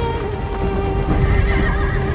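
Horses galloping, with a horse whinnying about a second and a half in, over held notes of an orchestral film score.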